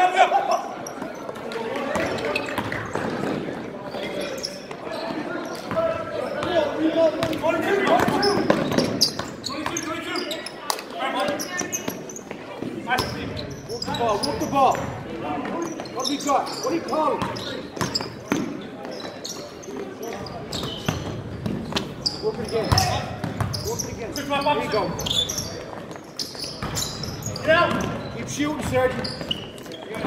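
A basketball bouncing on a hardwood gym floor as players dribble, with people's voices calling out through the play, echoing in the gymnasium.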